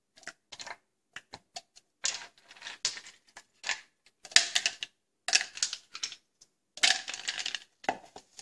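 Clear plastic blender cups handled and set down on a granite countertop: a string of short clicks and knocks, sparse at first, then in louder clusters from about two seconds in.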